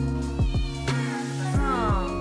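A domestic cat meows once over background music, the cry falling in pitch near the end.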